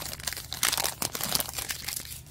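Plastic wrapper of a Topps Allen & Ginter baseball card pack crinkling and crackling in irregular bursts as it is torn open and the cards slid out.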